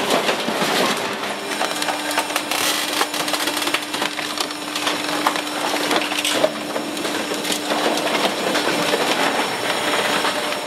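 A scrapped car body being crushed in a hydraulic scrap-metal baler: dense, irregular crackling, snapping and creaking of sheet metal giving way. A steady machine hum runs underneath from about a second and a half in until near the end.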